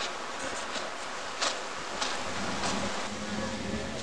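Small boat's outboard motor running with a steady buzzing drone, setting in about halfway through over outdoor wind noise, with a few sharp clicks.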